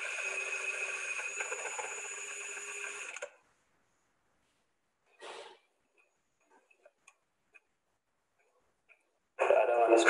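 Cordless drill driving a rotary scraper around the end of an HDPE pipe, shaving off the oxide layer before electrofusion welding: a steady motor whine for about three seconds that then stops. A short second burst about five seconds in, then a few faint ticks.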